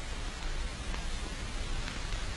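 Steady hiss of an old film soundtrack between narrated lines, with a few faint ticks and no other distinct sound.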